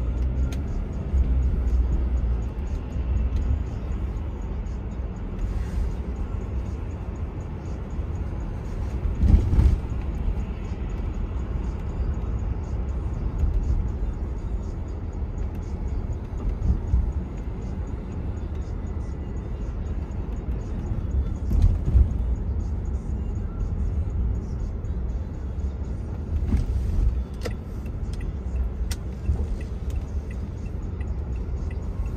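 Steady low rumble of a car driving in slow city traffic, engine and tyre noise, with louder swells from passing vehicles about nine seconds and twenty-two seconds in.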